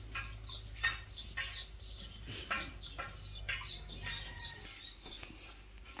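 Small birds chirping: a string of short, quick, falling chirps, about two a second, over a faint low rumble.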